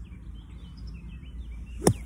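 A sand wedge striking the sand of a greenside bunker in a single sharp hit near the end, splashing the ball out, with small birds chirping behind.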